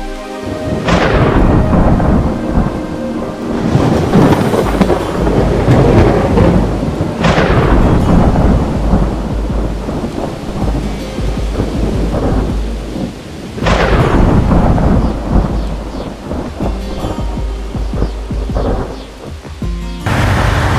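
Thunderstorm: steady heavy rain with three loud thunder claps, about a second in, about seven seconds in and near fourteen seconds, each fading into a rumble.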